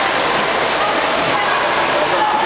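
Steady, loud rush of churning white water from a pool water feature, with people's voices faint in the background.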